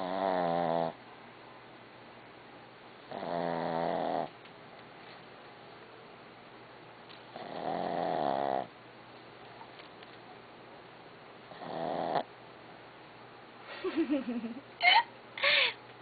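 A sleeping dog snoring: four long, pitched snores about four seconds apart. Near the end a person laughs.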